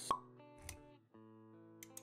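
Animated-intro music with sound effects: a sharp pop just after the start, the loudest sound, followed by soft held notes and a few light clicks near the end.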